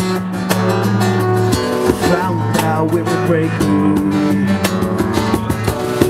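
Live band music led by a steel-string acoustic guitar strummed in a steady rhythm, over held low notes.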